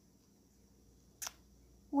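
Quiet room tone broken by a single short, sharp click a little past a second in, followed at the very end by a woman starting to speak.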